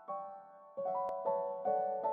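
Background piano music: chords struck roughly every half second, each ringing and fading, a little louder after about a second in.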